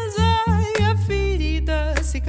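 A woman singing a melody that glides up and down, over electric bass notes and guitar, in a live acoustic band performance.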